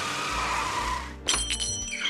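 Cartoon sound effects: car tyres screeching as the car skids to a stop, the screech rising in pitch and then holding for about a second. A sharp bang follows, with a bell ringing after it.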